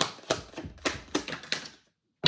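A deck of tarot cards being shuffled by hand: a quick, irregular run of crisp clicks and snaps, loudest at the start and stopping just before the end.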